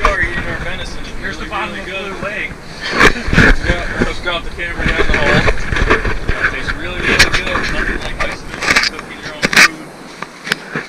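Indistinct talk between several people, with a few sharp knocks and a low rumble underneath that drops away near the end.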